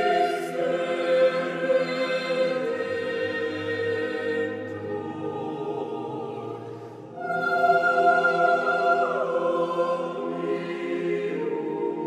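Mixed SATB choir singing a cappella in sustained chords. One phrase fades about six seconds in, and a louder phrase begins about a second later.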